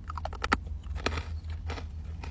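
A person biting into and chewing a Hi-Chew, a firm chewy candy. Scattered short wet mouth clicks, the sharpest about half a second and a second in.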